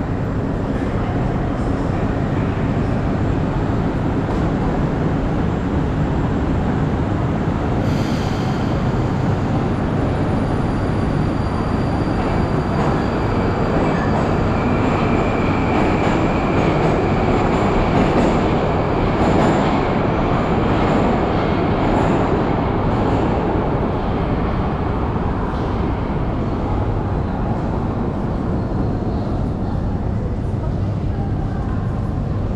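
Moscow Metro train running along a station platform: a rumble that builds to a peak about two thirds of the way in and then eases, with a thin high squealing tone from the wheels over the loudest stretch.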